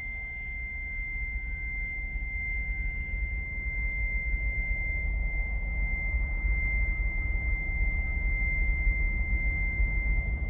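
Film-trailer sound design: a single steady high-pitched tone held throughout, over a deep rumble that slowly swells louder.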